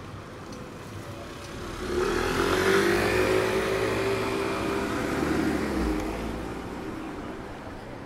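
A convertible sports car passing close by on a wet street: its engine and tyre hiss swell about two seconds in, hold for a few seconds, then fade away.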